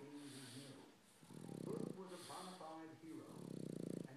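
Boston Terrier snoring in its sleep, breathing in a slow cycle of about two seconds per breath. Each snore rattles, and the loose lips flutter and bubble as it breathes out.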